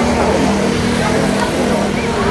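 Steady roadside traffic noise, with a motor vehicle's engine running close by as a continuous low hum.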